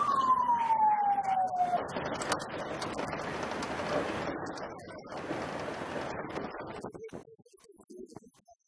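An emergency-vehicle siren winding down in pitch after a rising sweep, ending about two seconds in. Steady outdoor noise follows and fades out about seven seconds in.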